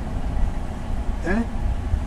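A man's short questioning 'huh?' just over a second in, over a steady low rumble of background noise.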